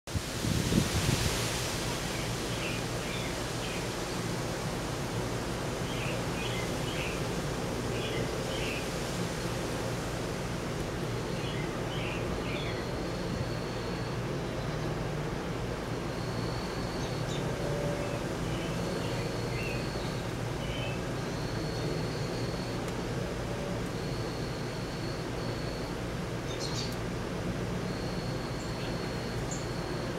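Steady background hiss with a low hum: room tone. Faint clusters of high chirps come through in the first half, and short high tones repeat every couple of seconds in the second half.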